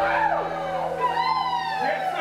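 A crowd whooping and cheering in long calls that rise and fall in pitch, over a held music chord that fades out near the end.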